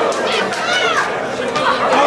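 Crowd of boxing spectators talking and shouting at once, several voices calling out over a steady hubbub in a large hall.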